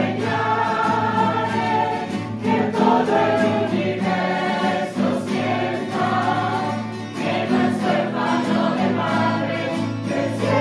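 A choir of women's and men's voices singing a hymn together, accompanied by guitars, in sustained phrases with short breaks between them.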